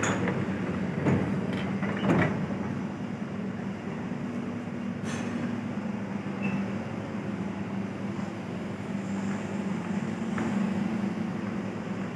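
Kawasaki-built SMRT C151 metro train standing at the platform with a steady low hum, as its doors and the platform screen doors slide open with a few clunks between one and two seconds in.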